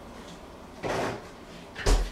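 A short scraping or rustling noise about a second in, then a sharp knock with a heavy low thump near the end, the loudest sound.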